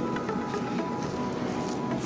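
Background music with steady held tones, playing at an even level.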